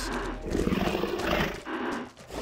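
Sound-designed dinosaur roar, a rough call lasting about a second and a half that fades out near the end.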